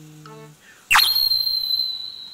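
Instax mini Liplay's print motor ejecting a print: a sudden high-pitched whine about a second in, held steady, then fading.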